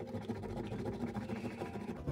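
Fingernail scratching the silver coating off a scratch-off sticker on a paper page: a steady, fast run of small scratching strokes.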